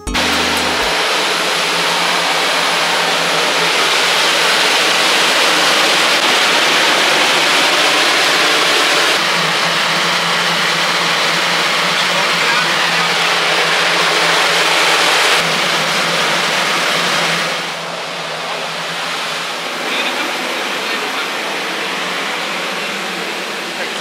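Steady, loud rushing noise like blowing air, shifting slightly in level a few times and dropping somewhat about 17 seconds in.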